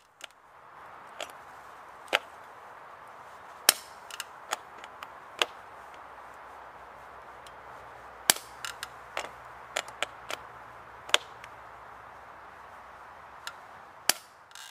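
Time Speciale 8 clipless pedal's spring-loaded mechanism snapping as a shoe cleat is clipped in and twisted out again and again: a series of sharp, irregular clicks, the loudest about four and eight seconds in, over a steady hiss.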